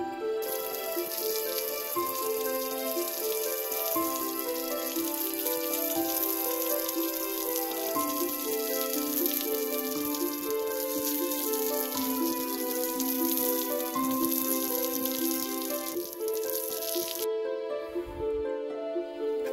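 Background music with a gentle melody, over a steady hiss of water spraying from a garden hose onto a cement wall; the hiss stops near the end.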